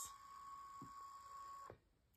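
Small KaiBot coding robot driving across a grid tile, its motors giving a faint steady whine that cuts off suddenly near the end as it stops.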